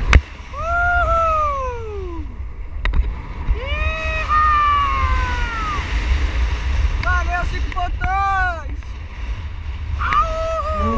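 A person's long wordless yells of excitement, each rising then falling in pitch: two long ones, then a couple of short calls and another long one near the end. Steady wind rumble on the microphone runs underneath.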